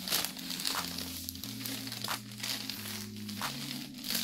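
A dry hot clothes iron pushed back and forth over parchment paper laid on a T-shirt, the paper rustling and crinkling under it with each pass.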